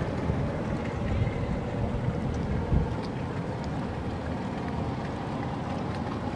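Steady wind noise buffeting the microphone, a low rumbling hiss with no distinct events.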